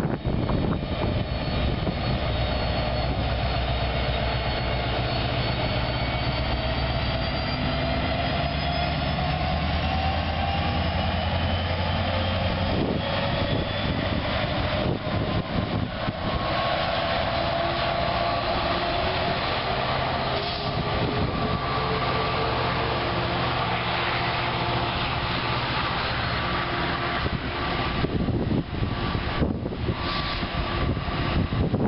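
NJ Transit diesel passenger locomotive passing close by with its engine running as a steady low drone, followed by multilevel coaches rolling past with continuous wheel-on-rail noise.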